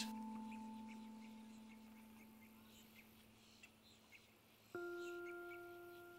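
Soundtrack of long, ringing bell-like tones: one fades away slowly, and a second, higher tone sets in suddenly near the end and rings on, fading.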